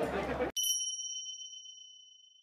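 A single bright bell-like ding that rings and fades away over about two seconds. It stands alone against dead silence, like a chime sound effect added at an edit. It starts about half a second in, where the festival crowd sound cuts off.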